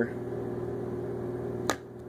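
A steady low background hum with a faint even tone, broken near the end by a single sharp click, after which the sound briefly drops a little.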